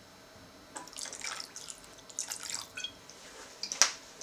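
Soy sauce poured into a wok of pork and tomato sauce, dripping and splashing in small irregular spatters from about a second in, with one sharp click near the end.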